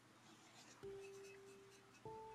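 Faint scratching of a watercolour brush. About a second in, a single plucked note of soft background music sounds and rings on as it slowly fades.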